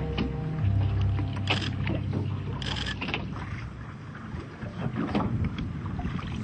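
A music bed ends, then a low motor hum with some splashing water, typical of a boat's engine, fades down.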